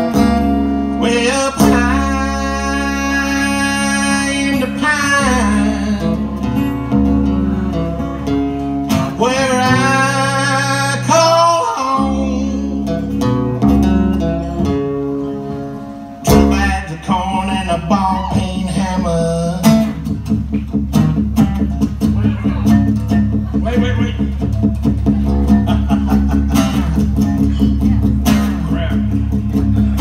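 Live acoustic country music: several acoustic guitars strumming steadily, with a wavering lead melody line over them in the first half. The playing thins briefly about halfway through, then picks up again.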